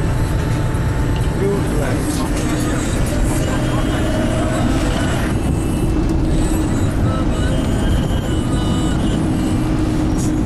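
Steady engine and road rumble heard from inside a moving bus, low and even throughout.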